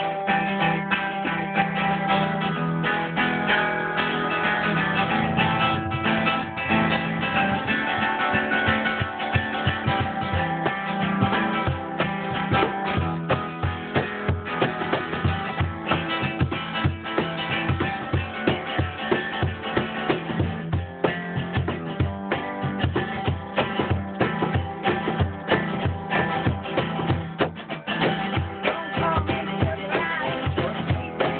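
Archtop guitar playing a song's opening, joined by a cajon beating a steady rhythm that comes in more strongly about eight seconds in.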